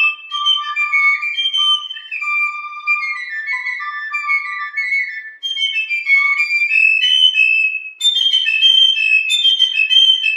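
Two wooden fifes playing a tune together in two-part harmony, quick runs of short piping notes. There is a brief gap about eight seconds in, after which the playing is shriller and breathier.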